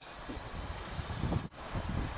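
Wind buffeting the microphone: an uneven low rumble with a hiss over it, dropping out briefly about one and a half seconds in.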